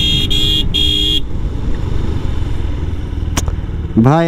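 Motorcycle horn honking in three beeps, the last ending a little over a second in, as the bike rolls toward people standing in the roadway; afterwards only the motorcycle's running and wind rumble on the microphone, with one sharp click near the end.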